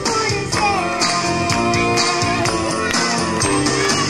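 A girl singing into a microphone over an amplified pop backing track with a steady beat.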